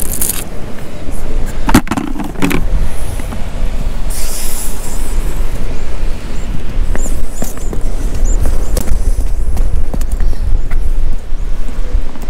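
Wind buffeting the microphone on an open rocky shore: a loud, fluttering low rumble. A couple of sharp knocks come about two seconds in, and a short burst of hiss about four seconds in.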